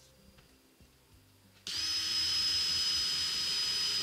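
Cordless drill spinning a sanding disc, switching on abruptly a little under halfway through and then running steadily at speed with a high whine.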